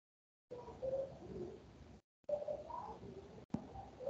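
Faint pigeon cooing, starting about half a second in, picked up through an online-meeting microphone that cuts out briefly twice. There is a sharp click about three and a half seconds in.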